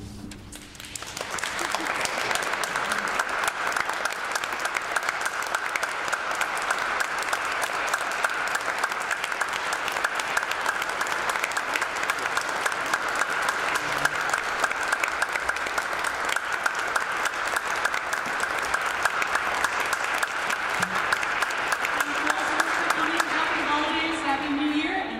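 Audience applauding steadily in a large, reverberant church, starting about a second in as the last chord of the Baroque ensemble dies away.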